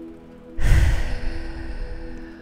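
A deep sigh breathed out close into the microphone, starting about half a second in and fading away over about a second. Under it, soft background music of steady held tones.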